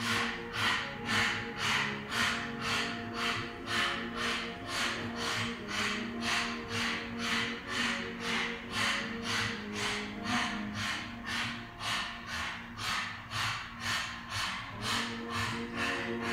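Strong, rapid panting through an open mouth with the tongue out, in and out at about two and a half breaths a second, kept up steadily. Background music with sustained low tones plays under it.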